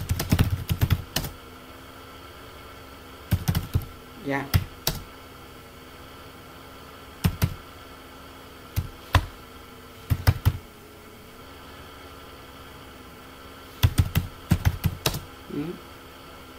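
Computer keyboard keystrokes, typed in short bursts of several clicks separated by pauses of one to three seconds, over a faint steady hum.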